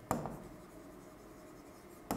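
Pen writing on an interactive smart-board screen: a sharp tap as the pen meets the surface, then faint rubbing of the pen strokes.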